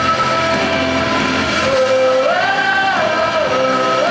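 Girls singing into a handheld microphone over backing music, holding long notes; about two seconds in the melody steps up to a higher held note and back down.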